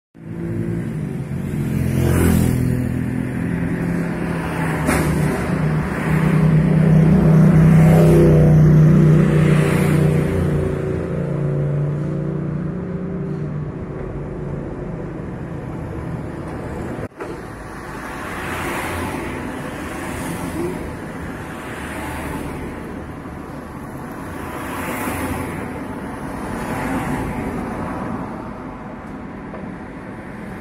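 Street traffic: cars passing one after another, each swelling and fading. A low engine hum is loudest for several seconds a few seconds in.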